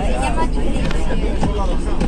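Steady low rumble of a moving bus, engine and road noise heard from inside the passenger cabin, with a girl's voice briefly at the start.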